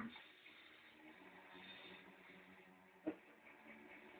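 Near silence: faint room tone with a low steady hum, broken by one short knock about three seconds in.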